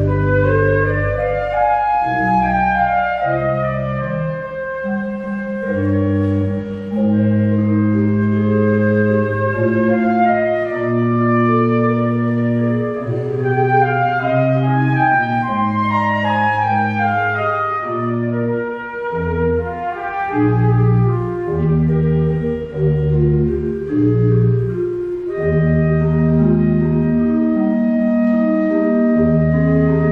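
Flute and pipe organ playing a flute sonata together: the flute carries the melody over the organ's accompaniment, with held low bass notes changing every second or two.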